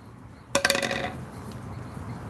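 A metal bowl knocked against a concrete counter about half a second in: one sharp clatter with a short rattle and a ringing tone that fades within about half a second.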